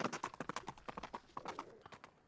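Hoofbeats of a ridden animal clip-clopping along a road, a quick run of sharp hoof strikes that grows fainter as it moves away.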